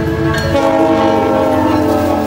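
A GO Transit diesel locomotive's air horn sounding a held chord of several steady tones, which grows louder about half a second in.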